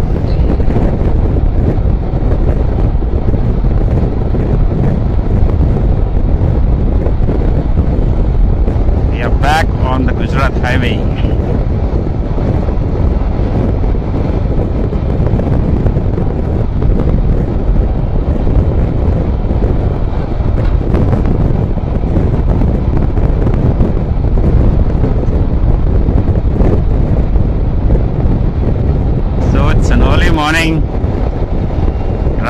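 Wind rushing over the microphone of a motorcycle cruising at highway speed, mixed with engine and tyre noise, steady throughout.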